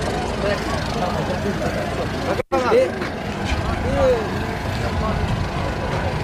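Indistinct voices over a steady low rumble. The sound cuts out for an instant about two and a half seconds in, at an edit.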